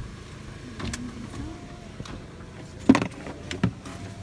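Car engine and road rumble heard from inside a car in slow traffic, with a sharp knock about three seconds in and a few quieter clicks after it.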